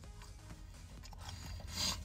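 Chewing a mouthful of stuffed pizza crust with the mouth closed: a faint rasping that grows louder near the end, over a low steady rumble inside a car cabin.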